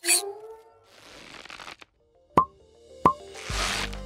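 Cartoon sound effects for an animated character appearing: a sudden swooping pop at the start, a soft hiss, then two short plops about two-thirds of a second apart. Near the end a whoosh leads into a music track with a steady bass.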